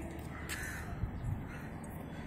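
A bird call about half a second in, over steady background noise.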